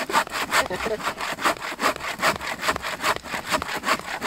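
A 28-inch bow saw cutting through a birch log, pushed and pulled by two people together in quick, even strokes at about four a second.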